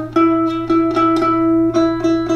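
Concert ukulele plucking a single note again and again, about four times a second at one steady pitch: the E found at the fourth fret of the C string, reached after stepping up the string note by note.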